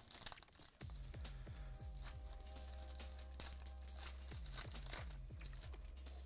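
Foil wrapper of a 2019 Prizm baseball card pack crinkling and tearing as it is opened by hand, in quick irregular crackles. Faint background music with steady low notes comes in about a second in.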